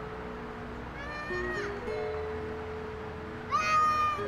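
A baby crying in two short wails, one about a second in and one near the end, over soft background music of held notes.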